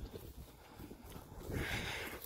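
Footsteps walking through pasture grass: soft, irregular low thuds, with a faint hiss coming in near the end.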